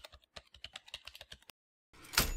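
Faint typing sound effect: a quick run of key clicks, about nine a second, for a second and a half, then stopping.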